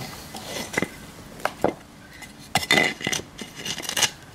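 A few sharp, irregular knocks and clinks from a wooden board being handled and set in place against a wall, with a quick cluster of them about two and a half seconds in.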